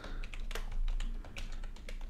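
Computer keyboard typing: a quick run of separate key clicks as a short word is typed.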